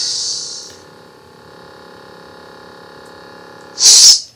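Lightsaber replica's sound board set off by its touchy activation switch: a loud hiss fades away in the first second, then a steady electric hum made of several tones, then a short loud hiss near the end.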